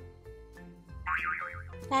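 Background music with steady bass notes, joined about a second in by a wobbling, warbling cartoon-style sound effect as the countdown timer runs out. A quick rising glide starts near the end.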